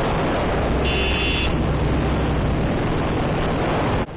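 Wind and road noise from a Royal Enfield motorcycle riding at speed on a highway, with the engine's low drone beneath, heard through a muffled, low-quality camera microphone. A short high-pitched beep sounds about a second in.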